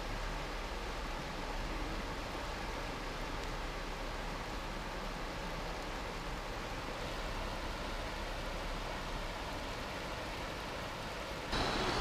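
Fast-flowing river water rushing steadily: an even hiss with no distinct events.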